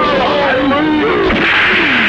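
Men's shouts and grunts from a brawl, over a steady hiss of heavy rain that swells about halfway through.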